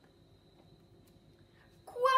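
Near silence with the faint rustle of a paper picture-book page being turned.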